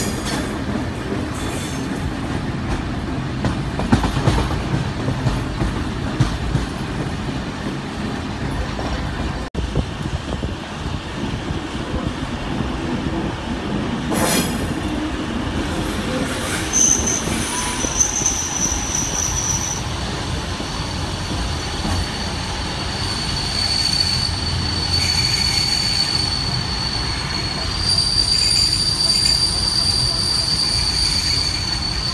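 Steel wheels of a heritage passenger train running on curved track, heard from an open carriage window: a steady low rumble. A high-pitched wheel squeal comes and goes through the second half.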